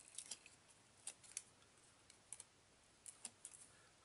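Faint, scattered clicks and crackles of fingers handling small paper and adhesive foam pads, coming in short clusters a few times.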